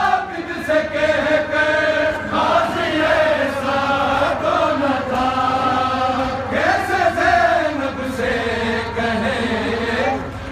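Male voices chanting a noha, a Shia mourning lament, in long held melodic lines without a break, amplified through a street sound system.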